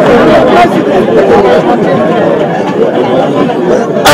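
Speech amid crowd chatter: a man talking while several other voices talk over one another.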